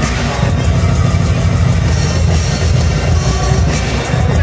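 Loud music with heavy bass.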